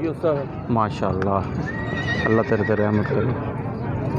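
A horse whinnying, with men's voices around it.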